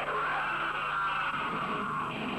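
Live metal band playing electric guitar and bass, with a sustained high note held over them that stops near the end.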